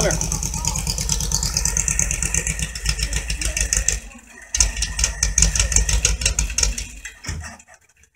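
Air-cooled flat-four engine of a VW Beetle running with a fast, even beat. The sound drops away briefly about four seconds in, comes back, then fades near the end.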